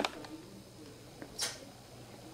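Soft kissing sounds: a small lip click at the start, then a short breathy smack about a second and a half in.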